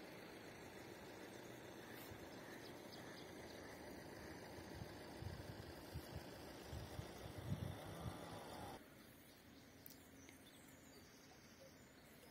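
Faint outdoor ambience: a low steady hiss with a few soft low thumps in the middle. It drops quieter about three-quarters of the way through.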